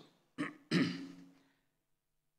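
A man clearing his throat into a podium microphone: two short rasps a third of a second apart, the second louder with a low voiced hum, fading away within about a second.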